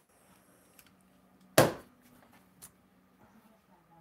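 A single sharp knock about a second and a half in, a hard object set down on a kitchen counter, among a few faint clicks and handling noises over a faint low hum.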